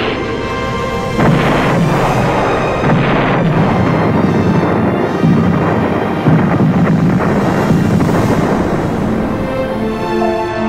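Several explosions going off over a dramatic music score, the sharpest a little after six seconds in.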